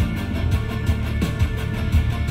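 Rock song with guitar, bass and a steady drum beat playing through the 2020 Mazda CX-5's 10-speaker Bose sound system, heard from the driver's seat with the bass set one step up and the treble two steps up. The driver hears the system as hollow, with exaggerated mid-range and lacking top-end crispness.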